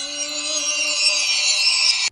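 An edited-in sound effect: a loud, steady hiss over a held low tone, cutting off suddenly at the end.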